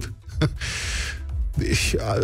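A man's breath drawn in close to a studio microphone, lasting about a second.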